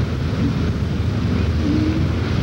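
Steady low rumbling noise, the kind of wind or background rumble picked up by an outdoor home-video camcorder microphone.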